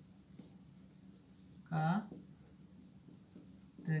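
Marker pen writing on a whiteboard: faint, short scratchy strokes as words are written out, with a man's single spoken word in the middle.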